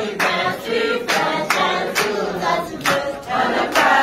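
A group of voices singing together, with hand-clapping about twice a second.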